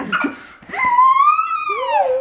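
A toddler's long, high-pitched playful squeal that rises and then falls, after a brief laugh at the start.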